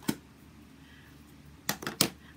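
Sharp clicks of hard plastic craft supplies being handled on a tabletop: one at the very start and two close together near the end, with faint room tone between.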